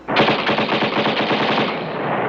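Rapid automatic machine-gun fire that starts suddenly just after the beginning and keeps going without a pause, over wartime combat footage.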